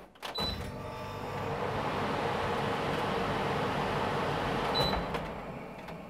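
Trotec portable air conditioner switched on: a short high beep from its control panel, then its fan starting up and running with a steady rush of air. A second beep comes near the end, after which the fan noise falls away.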